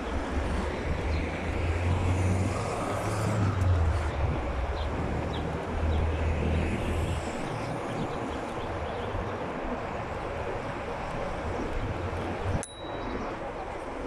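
City traffic and road noise heard while riding an electric scooter along an avenue, with a low rumble that swells and fades several times and a brief dip near the end.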